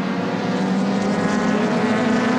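Engines of a pack of sports sedan and GT racing cars running through a corner, blending into one steady drone with a held pitch.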